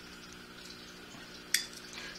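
A single sharp snip about one and a half seconds in as line clippers cut the tag end of fishing line off a freshly snelled hook, over a low steady hum.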